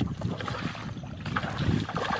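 Irregular water splashing, with wind rumbling on the microphone.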